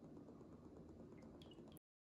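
Near silence: faint room tone with a few faint ticks, cutting off to dead silence near the end.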